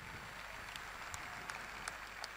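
Faint audience applause, a soft even patter with a few sharper single claps.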